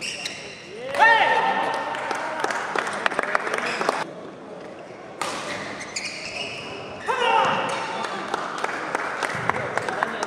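Badminton rally: sharp racket strikes on the shuttlecock and quick footfalls. Court shoes squeak about a second in and again about seven seconds in, with a short quieter break between, and voices in the background.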